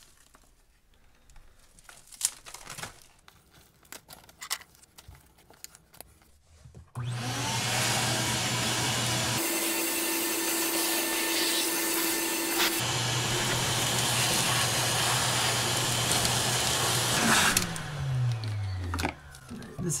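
Shop vacuum switched on about a third of the way in, running steadily as its hose sucks up rotted wood debris from the window sill. Near the end it is switched off and its motor hum falls in pitch as it spins down. Before it starts, a few light clicks of debris being handled.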